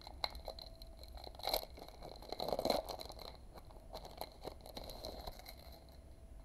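Pokémon card booster pack wrapper crinkling as it is torn open and the stack of cards is pulled out, the loudest crinkling about two and a half seconds in.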